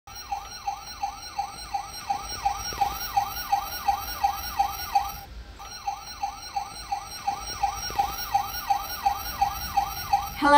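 Toy fire truck's electronic siren sounding a fast, repeating falling wail, about two and a half sweeps a second, with a brief break about five seconds in.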